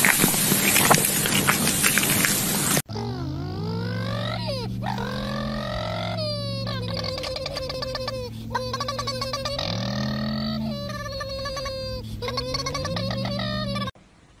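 Meat sizzling and crackling on a grill, which cuts off abruptly about three seconds in. Music follows: sliding and repeated notes over a steady low chord.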